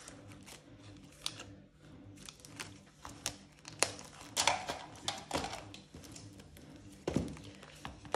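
Plastic binder pockets and ring binders handled on a hard countertop: rustling of plastic sleeves with a series of sharp clicks and taps, the loudest a little past the middle, and a dull thump near the end as a binder is set down.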